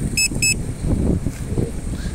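Two short electronic beeps from the drone controller app, its alert for the low-battery-deviation warning, followed by a low rumble.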